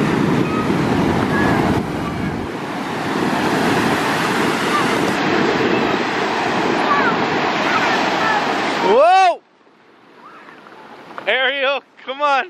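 Rough ocean surf, waves breaking and washing up the sand in a steady loud rush. About nine seconds in, a high voice calls out with a rising then falling pitch and the surf cuts off abruptly, followed by a few short voiced calls near the end.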